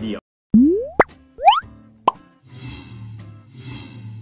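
Cartoon-style logo jingle: two quick rising swoops, each followed by a sharp pop, then two soft whooshes over a low steady hum.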